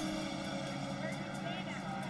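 A steady drone of sustained tones, with faint voices murmuring underneath.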